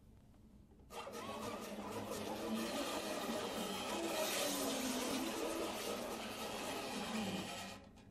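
Classical guitar ensemble making a dense, noisy, machine-like texture instead of plucked notes, with a few wavering sliding pitches underneath. It starts suddenly about a second in and cuts off sharply just before the end.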